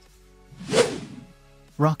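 A single whoosh sound effect of a video transition, swelling and fading within under a second, loudest a little under a second in, over faint background music.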